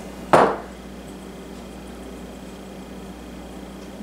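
A single sharp knock of a seasoning shaker set down on the countertop, with a brief ring, followed by quiet kitchen room tone with a faint steady hum.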